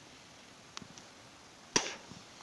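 Mostly quiet, with a couple of faint ticks and then one sharp click near the end.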